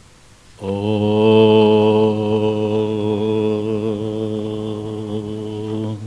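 A man's voice chanting one long, held syllable of a Sanskrit invocation at a steady low pitch. It starts just under a second in and is held for about five seconds.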